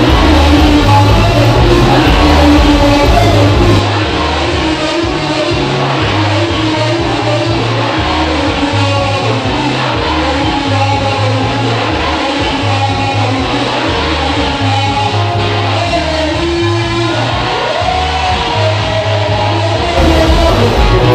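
Loud church praise music with a walking bass line and singing. The sound drops a little in level about four seconds in.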